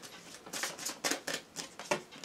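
Oracle cards being handled and drawn from a deck: a run of short card flicks and taps, about half a dozen in quick succession.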